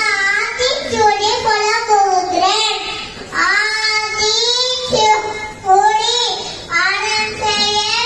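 A young child's voice chanting verses in a sing-song tune, holding and bending each note, with short breaks between lines.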